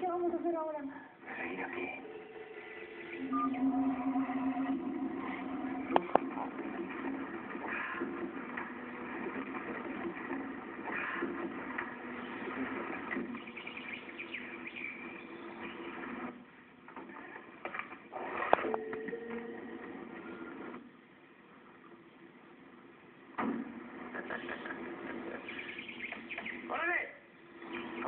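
People's voices, with two sharp clicks, one about six seconds in and one at about eighteen seconds.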